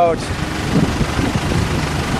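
Steady low rumble of vehicle engines and traffic in a parking lot, with faint voices in the background.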